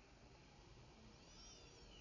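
Near silence, with a few faint high-pitched chirps in the second half.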